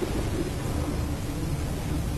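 Steady low rumble with an even hiss over it, the background noise of the recording, with no distinct event.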